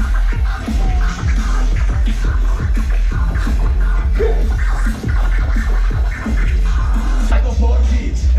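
Live hip-hop music over a festival stage sound system, a heavy steady bass under DJ turntable scratching.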